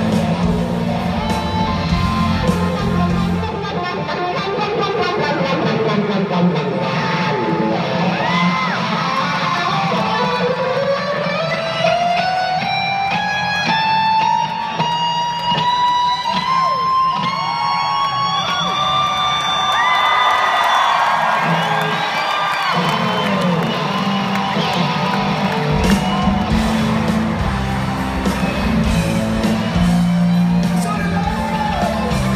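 Live rock band playing through a PA, recorded from the audience, with electric guitars to the fore. For most of the stretch the low end drops back while a long held guitar note slowly rises in pitch, and the full band comes back in near the end.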